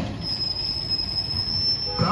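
A steady high-pitched whistle held for most of two seconds over a background hum of street traffic.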